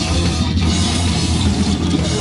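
A hardcore punk band playing loud and fast live: distorted bass and guitar over a pounding drum kit, a dense unbroken wall of sound heard from close on stage.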